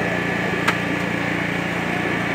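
Steady mechanical hum, like a small engine running, with one sharp click a little over a third of the way in.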